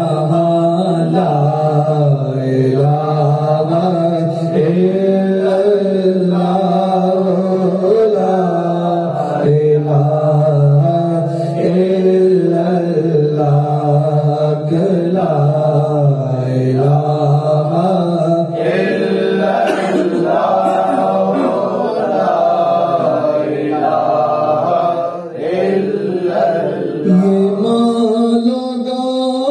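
Unaccompanied male devotional chanting at a Sufi zikr gathering: a continuous melodic recitation that rises and falls in pitch without pause.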